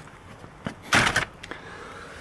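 Hands handling plastic trim and wiring under a car's dashboard: a short click, then a brief rustle about a second in.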